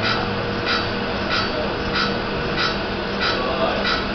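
Automatic slitting saw sharpening machine running: a steady motor hum with a short grinding stroke repeating evenly, about three every two seconds, as the wheel dresses the saw one tooth after another.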